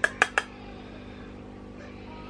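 Three quick sharp clicks of a makeup brush knocking against a pressed-powder compact as powder is picked up, followed by a steady low hum.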